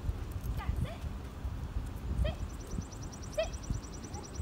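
Footsteps of a person and a dog walking on brick pavers, with scattered low thumps. Three short high chirps come through, over a fast, high pulsing trill.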